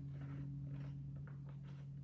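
Scissors snipping through a sheet of thin printer paper, with a few faint cuts, over a steady low hum in the room.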